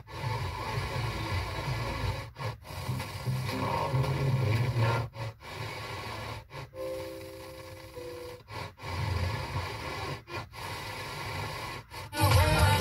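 Car FM radio being stepped through weak or empty frequencies: noisy, hissy reception with fragments of faint signal. The audio drops out briefly about ten times, mostly in pairs, as the tuner mutes at each frequency step.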